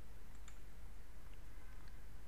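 A few faint computer mouse clicks over a steady low background hum.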